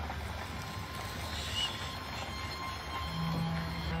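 Dark film score: a steady low rumbling drone, with a sustained low note coming in about three seconds in.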